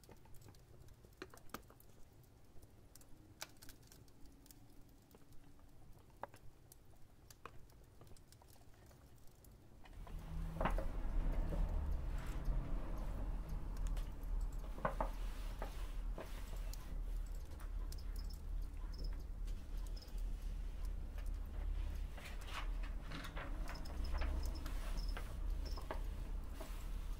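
Scattered light ticks and scratches of a pen writing on paper. About ten seconds in, a steady low rumble comes up suddenly and stays, with the small ticks going on over it.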